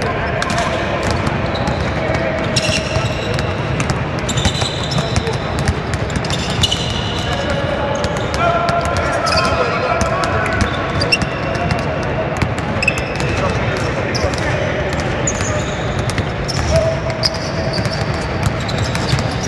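Several basketballs being dribbled on a hardwood court, a steady irregular patter of bounces, with short high squeaks from sneakers on the floor.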